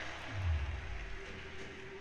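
A deep bass boom from the projection show's soundtrack, played over outdoor loudspeakers, sinking slightly in pitch and fading within about a second, over a steady held drone note.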